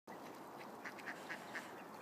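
A flock of mallards calling faintly: a quick run of short quacks, about four a second.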